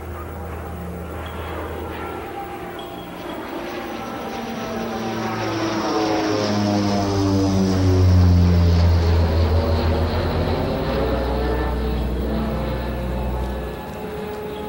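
An airplane flying past, its engine drone growing louder to a peak about eight seconds in and then fading, the pitch dropping as it passes.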